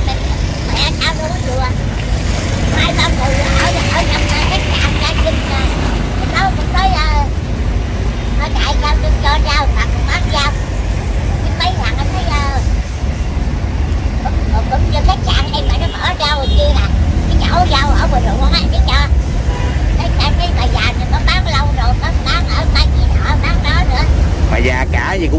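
Steady rumble of road traffic with motorbikes and trucks passing, under indistinct talking nearby and a thin plastic bag rustling as greens are bagged.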